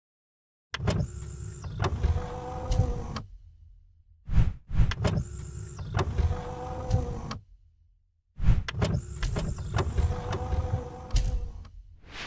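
Mechanical sound effects for an animated logo intro: a motorised whirring slide with sharp knocks and clanks. The same pattern plays three times, with brief silences between.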